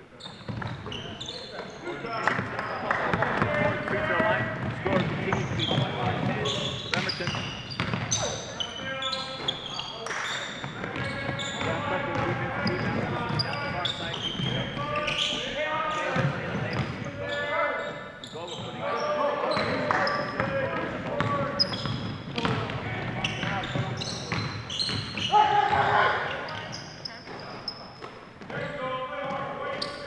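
Live basketball play: the ball bouncing on a hardwood floor, brief high squeaks of sneakers, and players' and spectators' voices calling out throughout.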